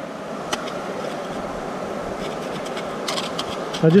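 Steady rush of a nearby creek, with a few light clicks and scrapes of a metal tool digging gravel out of a bedrock crevice into a plastic gold pan.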